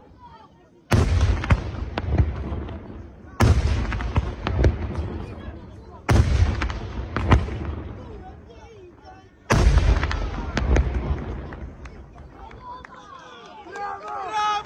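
Aerial firework shells bursting in four heavy volleys about every three seconds. Each volley is a sudden loud report followed by a couple of seconds of sharp cracks that fade away. Voices come in near the end.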